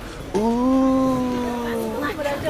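A person's long, drawn-out 'ooooh' of admiration, one held vocal tone falling slightly in pitch, starting about a third of a second in.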